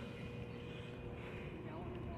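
Outdoor city street ambience: a low, steady traffic rumble with a faint hum and faint distant voices.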